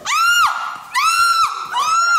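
A young woman shrieking in fright: short, high-pitched screams about a second apart, three in a row.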